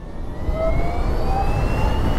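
BMW CE 04 electric scooter's motor whining and rising steadily in pitch as it accelerates under full throttle, over a low rush of wind and road noise.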